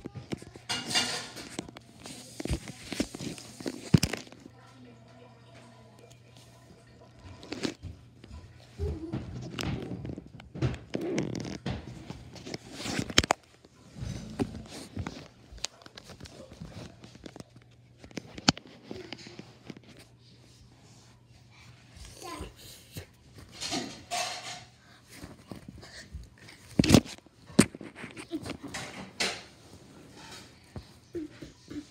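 A child's voice making wordless play-fight noises, among scattered sharp knocks, thumps and rubbing from plush toys and a hand-held phone being handled on a leather sofa.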